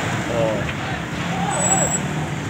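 Steady engine and road noise heard from inside an open-sided small vehicle moving slowly in busy city traffic.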